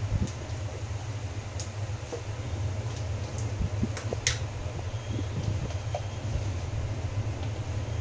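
A steady low hum with a faint sizzle from cumin seeds frying in hot oil in an aluminium kadhai, the oil frothing around the seeds; a few sharp pops as the seeds splutter, the loudest about four seconds in.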